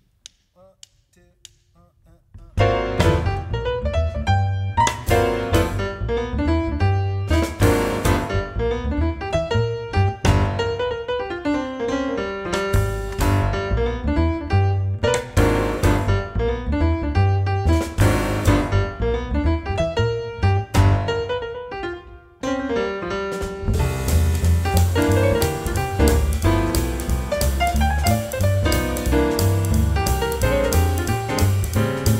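Jazz piano trio of Steinway concert grand, plucked upright bass and drum kit playing an up-tempo tune with a shuffle feel. A few soft count-off clicks come first, and the band comes in together about two and a half seconds in. Near the end the music drops out briefly and then returns fuller, with heavy cymbals.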